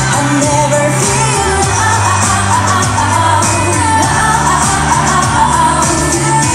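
Upbeat dance-pop song with female vocals sung into microphones over a backing track, with a steady beat and a held bass line.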